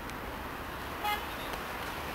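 Steady street noise with a single short horn beep about a second in.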